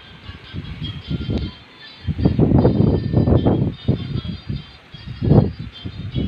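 Wind buffeting a phone's microphone outdoors: irregular low gusts of noise, strongest from about two to four seconds in and again briefly past five seconds.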